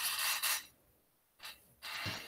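Breath noise on a video-call microphone: two short breathy hisses, one at the start and one near the end, with near silence between.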